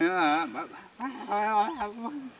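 A person's voice making two drawn-out, wavering "aah" sounds: one at the start and one just past the middle.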